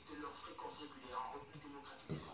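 A woman's voice reading the news, played from a television's speaker and picked up across the room.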